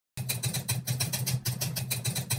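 Typing sound effect: rapid clicks over a low steady hum, starting abruptly a moment after a brief silence.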